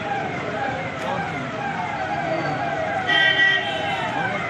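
A vehicle siren sounds in repeated falling sweeps, about two a second, over crowd voices. About three seconds in comes a brief, louder steady tone.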